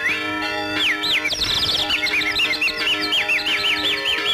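Tamil film song instrumental interlude: a held chord under a quick run of high, bird-like chirping glides that rise and fall, several a second.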